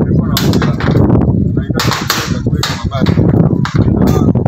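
Hammer driving nails through a tarpaulin into timber rafters: several sharp blows at irregular spacing.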